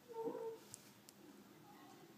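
A brief animal call, about half a second long, just after the start, then two faint clicks.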